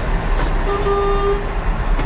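Bus diesel engine idling with a low, steady rumble, and one short horn toot lasting about two-thirds of a second near the middle.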